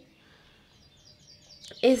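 A bird calling faintly: a quick run of short, high chirps that step down in pitch, lasting under a second.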